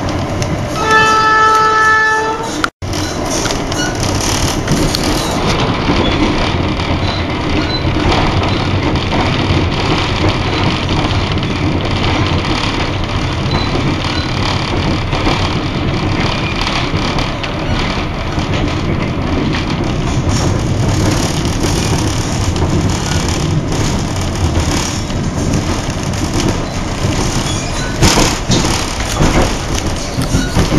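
Passenger train running: a steady, loud rumble and rattle of the moving carriage. Near the start a single held tone with a clear pitch sounds for about a second and a half. The sound cuts out abruptly for an instant just before three seconds in.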